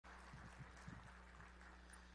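Near silence: room tone with a steady low hum, and a few faint soft thumps in the first second.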